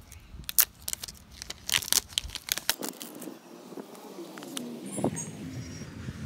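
Plastic shrink-wrap on an iPhone box being torn open by its pull tabs: a quick run of crackling and crinkling over the first few seconds, then quieter handling of the box.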